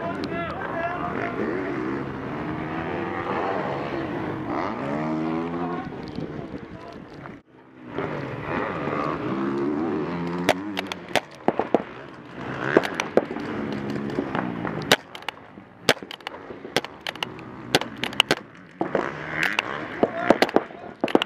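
Paintball game in progress: distant shouting voices over a steady noisy background in the first half, then from about halfway on a series of sharp, irregular pops of paintball markers firing and balls striking, growing more frequent toward the end.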